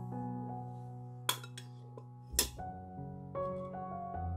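Gentle piano music plays throughout, with two sharp clinks about a second apart: a glass dish and a metal grater being set down on a wooden cutting board.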